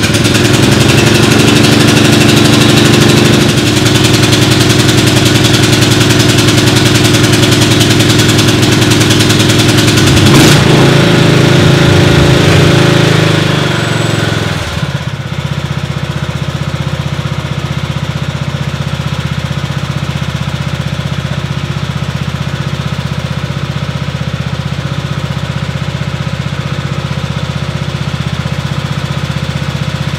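Craftsman riding lawn mower engine, just started, running fast and loud, then dropping about halfway through to a quieter, steady idle.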